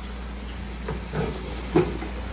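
Steady low hum with faint sizzling from a pot of beef and vegetables on the stove, with a few soft knocks and one sharp knock near the end as a plastic cutting board of chopped bell peppers is tipped against the pot.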